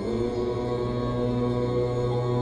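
A deep voice chanting a mantra, holding one low note steadily from the moment it starts, over ambient new-age music.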